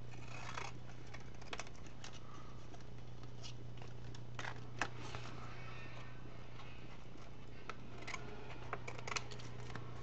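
Scissors snipping paper as a piece is trimmed around an envelope: short, scattered cuts with pauses between them, over a steady low hum.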